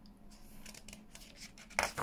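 A book page being turned by hand: soft paper rustling, then a short, sharp swish of the page near the end.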